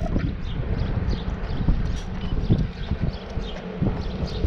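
Footsteps of a runner in running shoes on asphalt, a series of short irregular thuds as she passes close by, over a steady low rumble of wind on the microphone.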